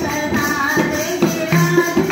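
A women's group singing a Hindi Krishna bhajan, led by one voice through a microphone, over a dholak drum and jingling hand percussion keeping a steady rhythm.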